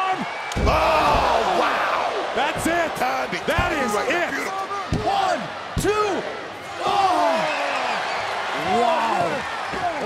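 Heavy thuds of wrestlers hitting the canvas of a wrestling ring: a big landing about half a second in and more slams at roughly 2.5, 3.5, 5 and 6 seconds. Arena crowd and excited voices yell over them throughout.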